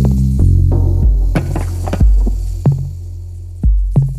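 Deep, melodic techno: a heavy, sustained bass line moving between notes, punctuated by sharp drum hits and lighter percussion above it.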